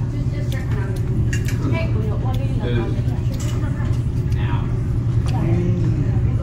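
Indistinct voices of people talking at nearby tables over a steady low hum, with a few light clicks.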